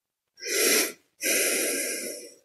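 A person breathing close to the microphone: two breaths, a short one about half a second in and a longer one just after a second in.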